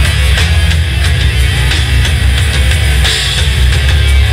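Nu-metal band playing live and loud: distorted electric guitars, bass guitar and a drum kit in a dense, heavy mix with a steady drum beat.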